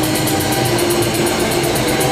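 Heavy metal drum kit played at full speed with the band: rapid, evenly spaced cymbal and snare hits over a continuous low bass-drum rumble and distorted guitars.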